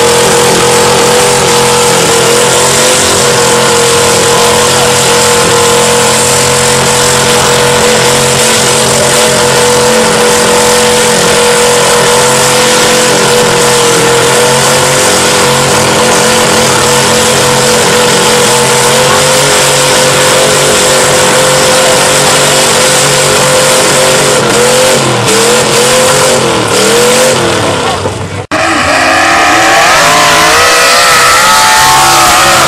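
Diesel engine of an articulated log skidder running steadily at high revs while working a mud pit. Near the end the engine note wavers up and down, then drops out briefly.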